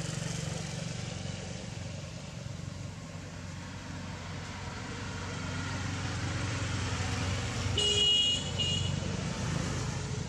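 Steady low rumble of motor vehicles going by, with a short high-pitched toot about eight seconds in, sounding twice in quick succession.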